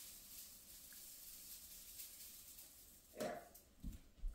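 Near silence: quiet room tone, broken by one short soft sound a little past three seconds and a brief low thud near the end.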